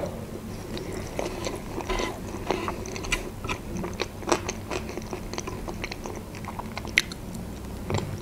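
Close-miked chewing and wet mouth sounds of a person eating mayonnaise-dressed crab stick salad, with many small irregular clicks and smacks. There is one sharper click about seven seconds in, and a plastic fork scrapes on a wooden board partway through.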